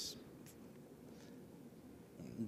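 Near silence: faint background hiss in a pause between words, with one faint tick about half a second in.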